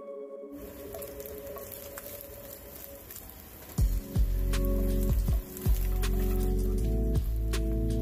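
Diced chicken sizzling in a nonstick frying pan, with light clicks of a wooden spoon stirring it, under background music. The sizzle starts about half a second in, and a louder, bass-heavy part of the music comes in about four seconds in.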